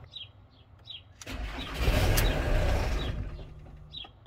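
Starter cranking a Ford Transit's 2.4 L Duratorq TDDI turbo diesel for about two seconds, then stopping. The crank angle sensor is unplugged, so the engine turns over without running and the oil pump builds oil pressure after the oil cooler gasket change.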